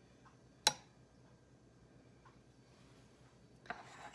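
A single sharp click or tap about two-thirds of a second in, with quiet room tone around it and a faint rustle near the end.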